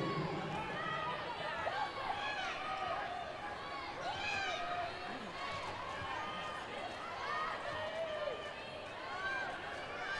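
Arena crowd noise at a wheelchair basketball game: many overlapping voices chattering and calling at once, fairly steady in level.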